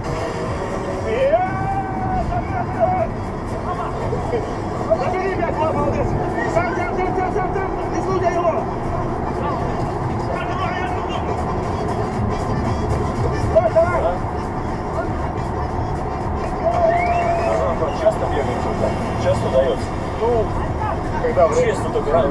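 Indistinct voices calling out, with background music underneath.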